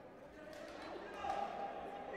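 Indistinct voices echoing in a large sports hall, with one loud held tone, a call or beep, lasting about half a second starting just over a second in.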